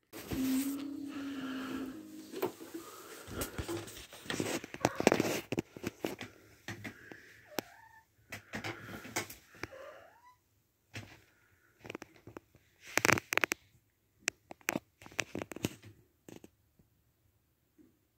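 Scattered knocks, clicks and rustles from a handheld phone camera being carried and handled. There is a low steady hum in the first couple of seconds and a few faint rising squeaks around the middle.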